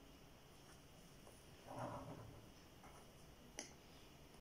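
Faint sounds of liquid being poured from a small plastic bottle into a stone mortar of mashed strawberries: a brief soft noise about two seconds in, then a single sharp click near the end. The rest is near silence.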